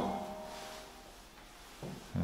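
A pause in a man's speech: a man's voice trails off at the start, then low room tone, and a short voiced sound begins just before the end.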